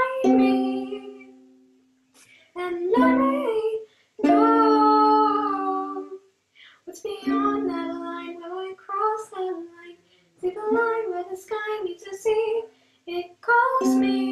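A girl singing a ballad to her own ukulele accompaniment: long held sung notes in phrases, with short breaks between them.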